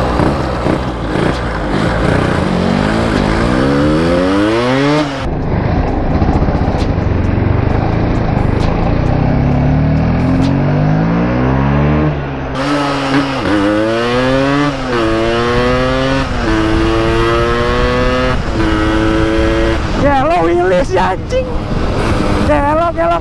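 Yamaha RX-King two-stroke single-cylinder engine accelerating hard under riding, its note climbing as it revs. Past the middle it runs up through the gears with a drop in pitch at each upshift.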